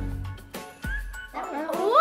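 Background music, and in the second half several children's voices exclaiming together, their pitch gliding up and down, loudest near the end.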